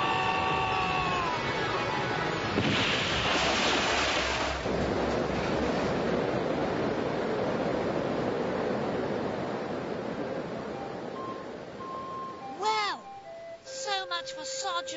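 Cartoon soundtrack of a fall into water: a held musical chord, then about three seconds in a loud splash that gives way to the steady rush of churning water, which fades near the end. A few short musical notes and a quick rising-and-falling glide come near the end.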